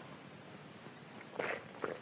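A pause in speech: low room tone, with a few faint, short soft noises about one and a half seconds in.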